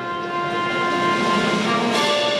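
Orchestral brass music fading in: a sustained chord that swells steadily louder, moving to a new chord near the end.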